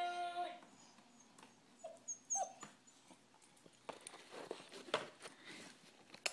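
A held electronic note from a baby's plastic musical activity table dies away within the first second. Then it is mostly quiet: two faint short whimpers about two seconds in, and a run of light taps and clicks on the plastic toy a little after four seconds.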